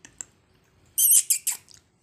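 Caged black francolin calling: a loud, harsh, high-pitched burst of three quick notes about a second in, after a couple of faint clicks at the start.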